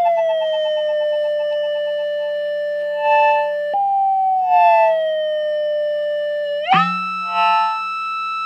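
CIAT-Lonbarde Plumbutter analog synthesizer sounding a held tone that slides slowly down in pitch, jumping suddenly to a new pitch about four seconds in and again near the end, over a steady low hum. Short tone blips break in a few times.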